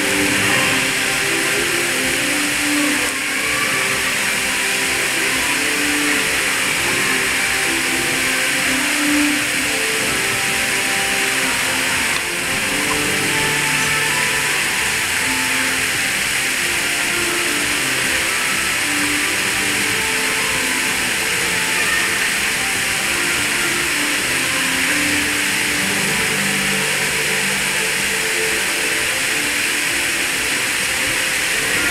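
Soundtrack music of a projection-mapping show playing over loudspeakers, soft melodic notes over a steady, loud hiss.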